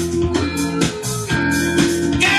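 Guitar-led music playing back from a vinyl record on a Dual 1241 belt-drive turntable with an Empire 66 cartridge, a steady beat running under it.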